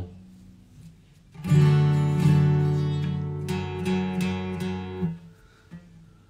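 Acoustic guitar strummed: a short run of chords starts about a second and a half in, rings with several strokes for about three and a half seconds, and stops shortly before the end.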